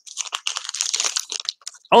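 Clear plastic crinkling and rustling as hands handle a stack of baseball cards in plastic sleeves. It is a dense crackle of small rustles lasting nearly two seconds, stopping just before the end.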